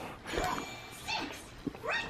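A baby's faint, short vocal sounds, about three of them.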